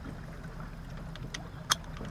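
A few light clicks and one sharp metallic click near the end as a 16 mm socket and an extension are handled, over a steady low background rumble.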